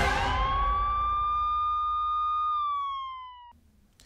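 A single police-siren wail used as a sound effect in a TV programme's bumper: the tone rises quickly, holds steady, then slides down a little before cutting off suddenly. It starts over the fading tail of a noisy whoosh.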